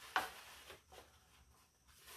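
Construction paper being folded by hand: a sharp crinkle just after the start, then fainter rubbing and crinkling of the sheets as they are creased.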